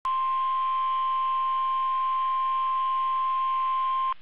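NOAA Weather Radio 1050 Hz warning alarm tone: one loud, steady, single-pitched beep, the signal that an emergency warning broadcast follows.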